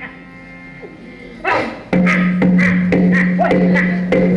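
Yakshagana music starts about one and a half seconds in: drum strokes about twice a second over a loud steady drone, with a voice gliding in pitch above them.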